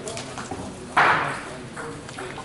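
Table tennis hall background: faint voices and light ball taps from nearby tables, broken by one sudden loud rush of noise about a second in that fades away within about half a second.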